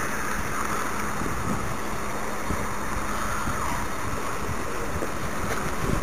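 Steady wind rushing over the microphone.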